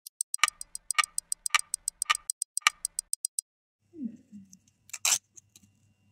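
Clock ticking sound effect: fast, even ticks, about six a second with a louder tick every half second or so, stopping about three and a half seconds in. It is followed by a short low sound falling in pitch and, about five seconds in, a sharp burst of noise.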